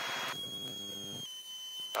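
Aircraft radio and intercom audio between transmissions: hiss that drops away, then a brief buzzing hum until a little past halfway, under a steady high electrical whine. A sharp click near the end as the next radio transmission opens.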